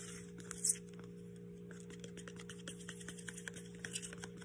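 Metal blade stirring two-part epoxy in a plastic mixing cup and scraping its sides: faint, quick, irregular ticks and scrapes, with one louder click under a second in. A faint steady hum runs underneath.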